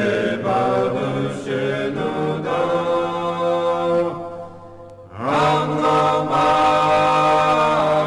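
Choir singing a slow Orthodox church chant in long held notes, several voices together; the singing breaks off for about a second around four seconds in, then resumes.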